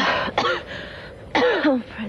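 A person coughing and clearing their throat in three short hoarse bursts, the voice falling in pitch on the last one.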